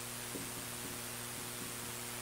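Steady electrical mains hum over a hiss, with a few faint ticks of a marker writing on a whiteboard.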